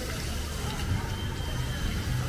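Water splashing and trickling from a small cascade into a garden pond, a steady wash of noise.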